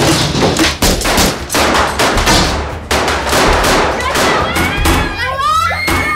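Staged gunfight sound effects: a rapid, dense run of pistol shots and thuds through the first half, then near the end a wavering high cry that rises and falls.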